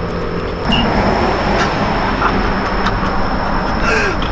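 Road traffic: the steady rush of a vehicle going by, swelling about a second in, over a low steady hum.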